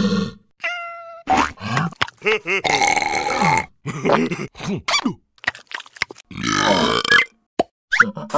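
Wordless cartoon character voices, mostly grunts and short pitched cries with rising and falling pitch, mixed with comic sound effects. It opens with a brief ringing ding.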